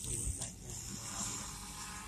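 Low rumble of a slowly moving car heard from inside the cabin, with a breathy hiss lasting about a second in the middle.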